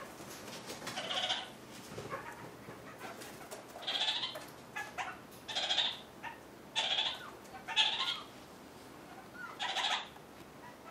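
Kakariki (red-crowned parakeet) giving short, bleating calls, the goat-like call the bird is named for in German. There are about six calls: one about a second in, then roughly one a second from about four seconds on.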